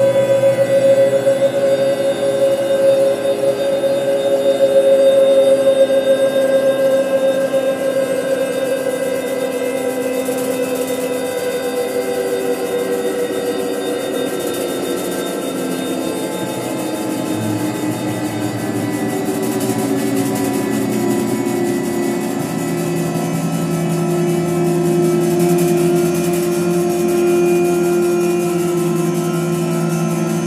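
Live electronic music: layered, sustained synthesizer drones with no beat, the pitches shifting slowly. A strong mid-pitched tone leads the first third and fades, and lower tones take over in the last third.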